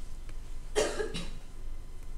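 A person coughing: a short double cough a little under a second in, the first cough louder than the second.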